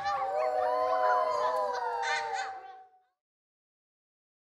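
Several young children's voices holding long, wavering notes together, with some notes sliding in pitch. The sound cuts off abruptly about three seconds in.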